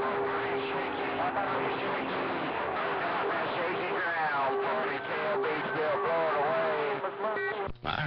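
CB radio receiver playing heavy static with faint, garbled voices of distant stations breaking through. A steady whistle tone runs under it, and the audio cuts out briefly near the end.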